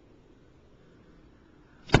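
Low room noise, then one sharp plastic click near the end as a clear plastic storage box is handled.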